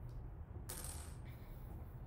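A faint, light metallic clink of an iron nail being pulled off a magnetic wand, a little under a second in, with a short high ring after it.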